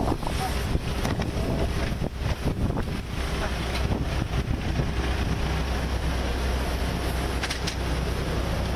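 Steady low rumble of idling minibus engines, with wind buffeting the microphone and a few sharp clicks near the end.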